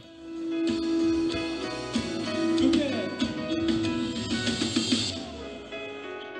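Live band music from a sertanejo concert stage: guitar and drums playing under a singer's voice, picked up from the crowd.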